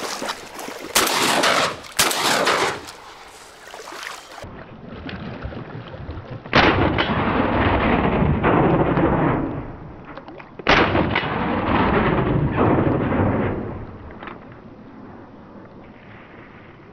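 Two shotgun shots about four seconds apart, each a sudden loud report followed by a long echo that dies away over about three seconds. Before them, about one and two seconds in, come two shorter sharp bursts.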